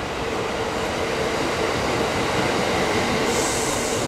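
Two-car Kintetsu 22600 series Ace electric limited express running past the platform, its rolling noise growing steadily louder with a steady hum. A high hiss comes in near the end.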